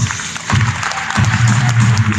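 Audience clapping in a hall as a song ends, with low instrumental notes from the stage's backing music starting under the applause about half a second in.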